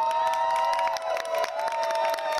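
A small group cheering at a birthday celebration, with two long drawn-out calls and hands clapping throughout.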